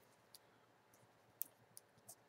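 A few faint, brief clicks and taps as a makeup palette is handled, fingernails on the palette case; the sharpest about a second and a half in. Otherwise near silence.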